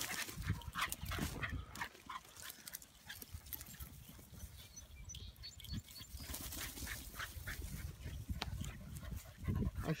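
Dogs making short vocal sounds as they run and play in long grass, mixed with grass rustling and low thumps of wind and handling on a phone microphone. A person calls out a dog's name near the end.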